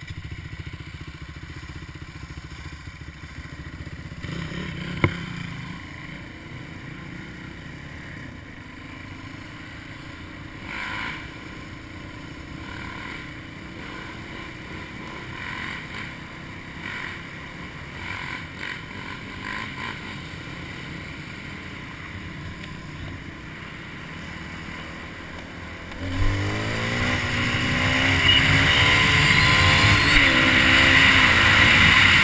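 Suzuki DR350 single-cylinder four-stroke engine running at low speed, with one sharp click about five seconds in. Near the end it revs up and gets much louder as the bike accelerates, with rising engine pitch and a hiss of wind.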